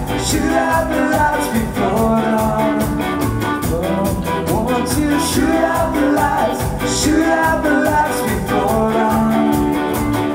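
Live ska band playing an instrumental stretch: drum kit keeping a steady beat under electric guitar, upright bass and trumpet lines.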